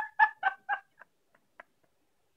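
A baby giggling in a quick run of short, evenly spaced bursts, about four a second, that fade away about a second in, with a faint one or two after.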